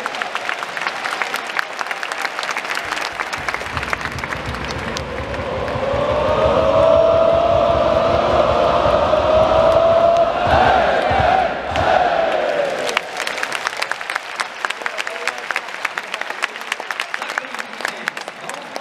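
A stadium crowd of football supporters clapping, with a long sung chant held by many voices together in the middle, rising and falling in pitch. Close, sharp hand claps come back strongly near the end.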